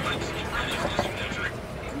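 A guide's voice talking over the steady low rumble of a moving safari ride vehicle.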